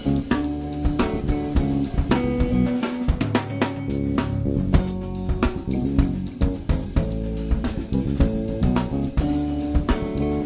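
Live instrumental music from a trio playing without vocals: a drum kit with steady bass-drum and snare hits under plucked string lines.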